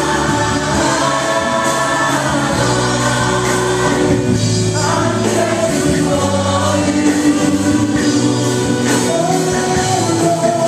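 Live gospel worship song: a group of singers on microphones sings in Haitian Creole, amplified through PA speakers, over a band with keyboard and drums.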